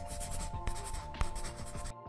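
Pen-scribbling sound effect, a scratchy rustle of writing that cuts off near the end, over background music with sustained tones.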